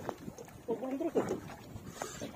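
A man's short vocal sounds, about a second long, with a pitch that bends up and down, made while fighting a fish on a jigging rod.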